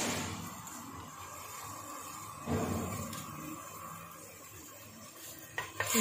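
A spoon stirring sugar syrup in a steel pot, with soft scraping and a louder stir about two and a half seconds in and a couple of light knocks against the pot near the end. The syrup is at the stage where the sugar has fully dissolved.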